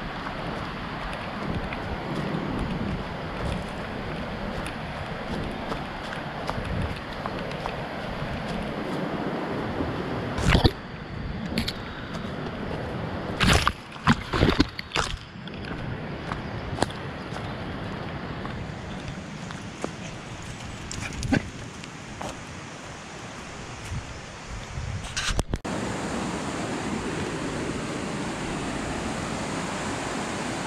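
Steady rushing of a stream running over rocks, with a few sharp knocks and bumps about ten to fifteen seconds in and again near twenty-five seconds.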